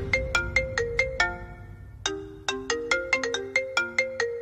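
Mobile phone ringtone: a quick melody of short notes, with a brief break about halfway before the tune starts again.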